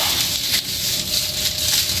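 Fresh lemongrass stalks rustling as hands bend and wind them into a bundle, faint against a steady hiss of background noise.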